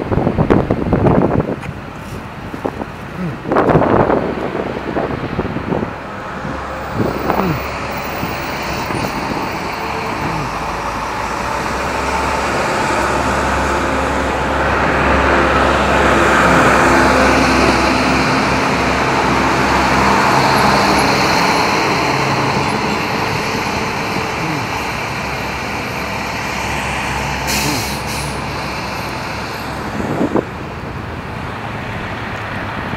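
Street traffic: a heavy road vehicle's engine rises, peaks midway and fades over about twenty seconds, with a short hiss near the end. A few loud rumbles hit the microphone in the first four seconds.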